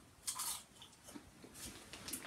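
Faint chewing and crunching of a mouthful of popcorn, with a short louder burst near the start.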